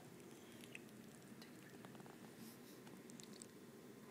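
Near silence: faint room tone with a few faint light ticks.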